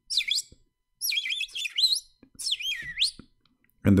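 Bird chirping: three quick runs of high, whistled chirps that sweep down and back up in pitch, with short pauses between them.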